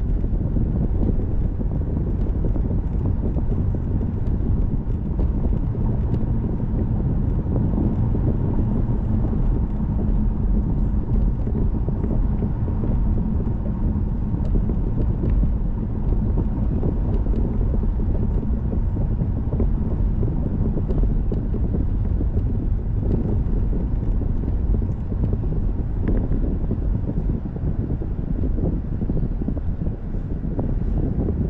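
A car being driven on a city road, heard from inside: a steady low rumble of tyres on the road and the engine, with no sudden events.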